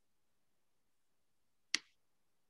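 A single sharp click near the end, against near silence.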